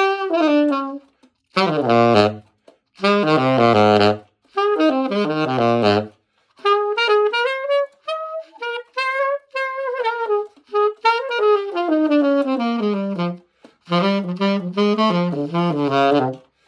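Selmer Mark VI tenor saxophone with a five-digit serial number, played solo in phrases broken by short breaths. A long phrase in the middle climbs into the horn's upper notes and then falls back down to low notes near the end.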